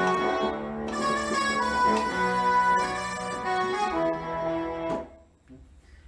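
The Brass Section patch of the AIR Music Technology Ignite software instrument playing held chords that change about every second, stopping about five seconds in.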